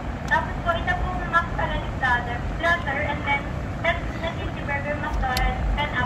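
Children's high-pitched voices talking inside a car, over the steady low rumble of the car cabin.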